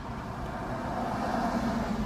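Steady road and engine noise heard inside a car's cabin.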